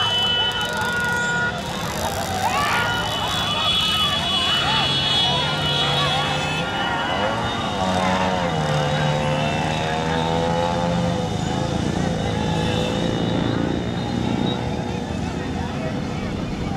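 Many motorcycles running at speed together, engines steady, with men shouting over them and long steady high tones on top.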